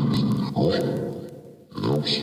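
Ghost box app (Hell Box) on a phone playing chopped, garbled voice fragments from its reversed-speech sound bank. It cuts in abruptly out of dead silence, with the sound squeezed into a narrow, thin band.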